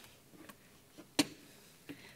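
Quiet room tone with a few faint clicks and one sharp, louder click about a second in.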